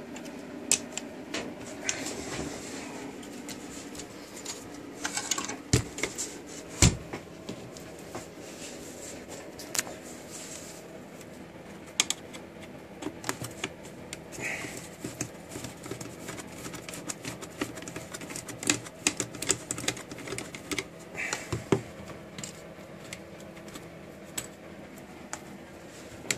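Irregular clicks, taps and clatter of the metal chassis and screws of a vintage hi-fi tuner being handled and unscrewed with a screwdriver, with a couple of louder knocks about six to seven seconds in. A faint steady hum runs underneath.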